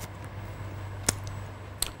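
Quiet room tone with a steady low hum, broken by two brief faint clicks, one about a second in and one near the end.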